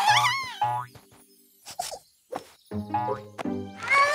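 Cartoon soundtrack of playful children's music with springy boing sound effects for a bouncing rubbery blob. A wobbling boing comes at the start and another near the end, with a few short knocks in between.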